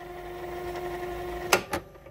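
Silver ST3200 radio-cassette recorder's tape transport fast-winding the cassette on its newly replaced drive belt: a steady whirring whine that grows slightly louder. About three-quarters of the way through come two sharp clicks of the piano-key transport buttons.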